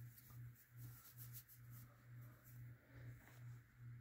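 Near silence: room tone with a low hum that swells and fades about two or three times a second, and faint rustling of a white cotton glove being pulled on.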